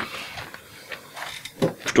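Faint rustle of a sheet of paper being handled over room tone, with a voice starting right at the end.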